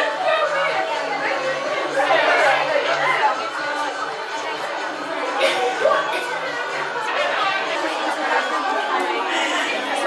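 Background chatter of several people talking at once, with no single voice standing out.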